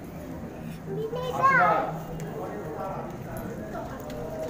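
People's voices, with one loud, short, high-pitched call about a second and a half in that rises and falls in pitch, over a low steady hum.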